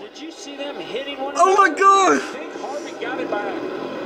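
Excited voices from a NASCAR race on television, loudest about a second and a half in, with a low steady race-car engine drone underneath near the end.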